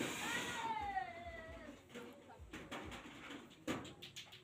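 A single drawn-out call falling in pitch over about a second and a half, followed by a few sharp knocks.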